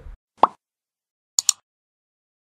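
Sound effects: one short, loud pop about half a second in, then about a second later a quick double click.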